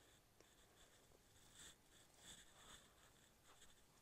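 Near silence with a few faint rustles of wig hair and cap as a wig is pulled off the head and turned over.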